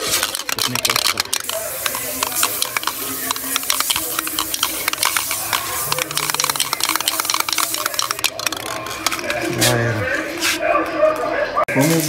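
An aerosol spray-paint can spraying black paint onto a plastic motorcycle tail fairing: a steady hiss with many small clicks, which stops about nine seconds in. A voice follows briefly near the end.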